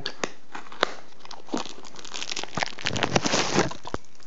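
Plastic wrapping crinkling as it is handled and pulled off a headphone carrying bag, with scattered sharp clicks early on and a busier stretch of crackling in the second half.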